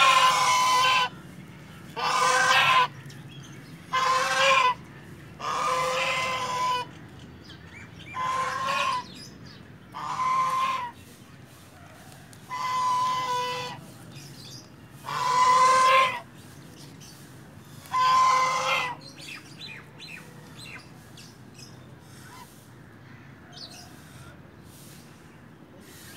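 Domestic white goose honking: about nine long calls, each up to a second, coming roughly every two seconds. The calls stop about three quarters of the way through.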